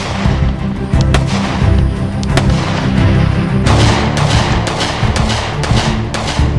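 Background music with pistol shots from a Glock Model 30 .45 ACP cutting through it: a couple of spaced shots in the first half, then quicker shots in the second half.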